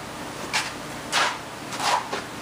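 Three short scraping rubs, about two-thirds of a second apart: a cup-type spray gun being handled as its air cap is twisted round by hand to set the spray pattern.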